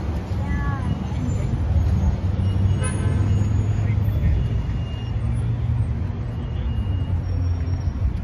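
City street traffic noise: a steady low rumble of passing road vehicles.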